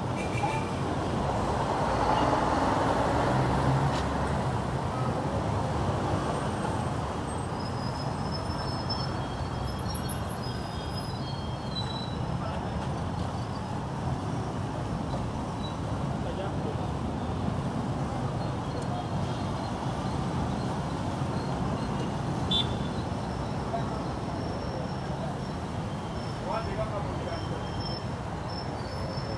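Busy city street traffic: a steady din of motorcycle taxis and other vehicles running and idling, with people's voices in the background. It is louder for a couple of seconds near the start.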